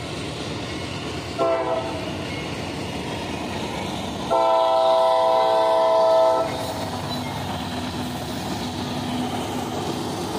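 Diesel freight locomotive sounding its air horn at a grade crossing: a short blast followed about two seconds later by a long, louder blast, one chord of several notes. Under it runs the steady rumble of the train's engines and wheels as it passes the crossing.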